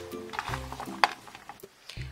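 Background music with held notes, over a few sharp clicks of raw cut vegetables and sausage pieces being tossed by hand on a baking tray.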